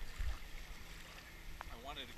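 Wind buffeting the microphone over the wash of small waves at a lake's edge, with a low thump just after the start. A man's voice begins near the end.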